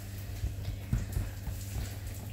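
Fingertips pressing out pizza dough on a kitchen countertop: a run of soft, dull taps and knocks over a steady low hum.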